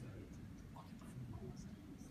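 Quiet room tone: a low, uneven hum with faint rustling and a few scattered faint murmurs.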